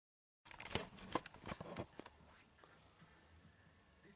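Handling noise from hand-stringing a lacrosse goalie head: nylon string pulled through hard mesh and the plastic head, giving a cluster of sharp rustles and clicks. The sound cuts in suddenly about half a second in, and after about two seconds only faint room tone remains.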